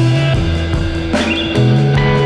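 Background music with a bass line stepping between notes and percussion hits.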